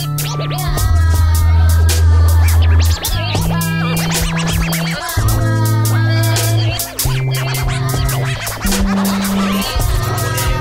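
Hip hop instrumental beat: a deep bassline moving to a new note every second or two over a steady drum pattern, with turntable scratches over the top.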